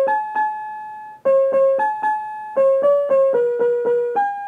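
Smart Music Flower Pot, a touch-sensitive plant-piano speaker, playing a simple tune in electronic piano tones as a hand touches the basil plant in it. Single notes sound one after another, about three a second, with one note held for about a second near the start.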